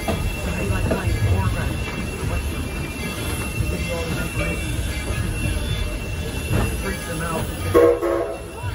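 Steady rumble and clatter of a narrow-gauge train's passenger car rolling along the track, heard from aboard, with scattered passenger voices and a brief loud pitched sound near the end.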